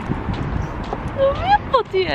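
Hard-soled footsteps on stone paving, a steady run of short knocks, with a woman's voice starting to talk about a second in.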